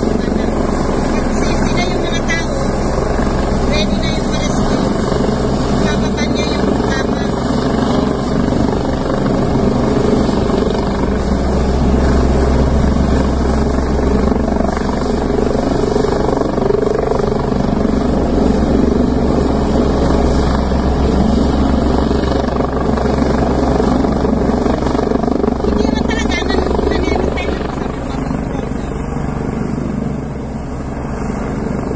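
Helicopter flying close by with a loud, steady rotor and engine drone. It grows stronger for a stretch in the middle and eases off just before the end.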